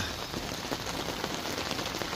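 Steady rain pattering, a dense spread of small drops.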